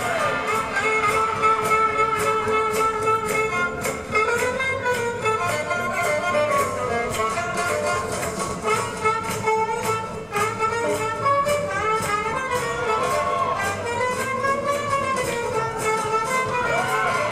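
Swing jazz played by a band for Lindy Hop dancing, with a steady beat.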